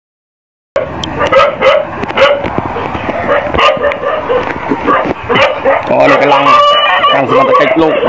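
Dogs barking repeatedly, starting under a second in, mixed with people's voices.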